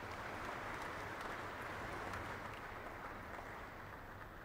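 Audience applauding, swelling at the start and easing off toward the end.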